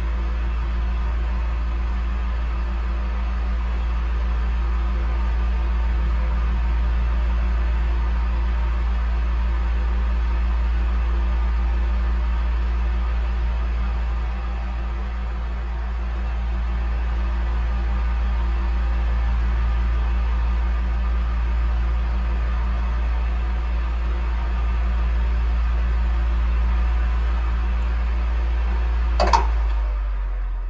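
Electric fan running, a steady low hum under an even airy hiss, with a short click near the end.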